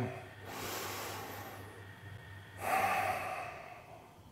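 A man taking one slow belly breath: a long, quiet inhale through the nose, then a shorter, louder exhale through the mouth starting about two and a half seconds in.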